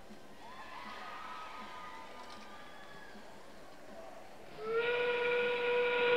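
The FIRST Robotics Competition field's train-whistle sound comes on suddenly about four and a half seconds in and is held steady to the end, marking the start of the endgame with 30 seconds left in the match. Before it there is only faint arena background.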